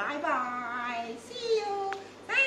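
A woman singing in a high voice, the notes held and sliding in pitch, with a short click near the end.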